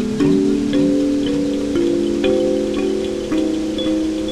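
Homemade kalimba's metal tines plucked in a minor key, a new note about every half second. The notes run through delay effects, so each one repeats and sustains into the next, building an overlapping cluster of ringing tones.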